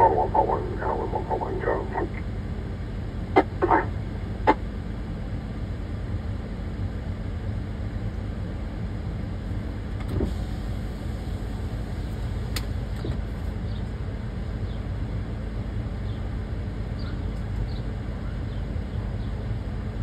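Steady low rumble of an idling vehicle engine, with a brief voice at the start and three sharp clicks about three to four seconds in.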